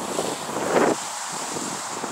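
Wind on the microphone: a steady rushing noise, with a brief louder burst of noise just under a second in.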